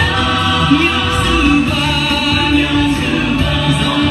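Music for a dance: a song with singing voices over instrumental accompaniment, playing continuously.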